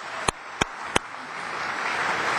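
Audience applauding: a few sharp single claps close to the microphone, about three a second in the first second, give way to a steady patter of clapping from the hall.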